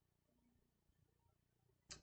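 Near silence: room tone, with a brief high hiss near the end just as speech starts again.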